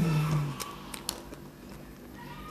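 A woman's short closed-mouth "mmm" hum, falling in pitch, then a few faint clicking mouth sounds as she eats a chocolate-coated ice cream bar.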